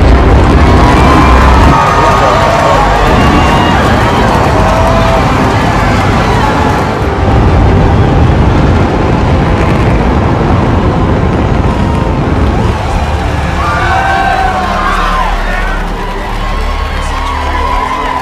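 Rocket engine exhaust roar, loud and starting suddenly, laid under a music score; from about two-thirds of the way in, a crowd cheering and whooping.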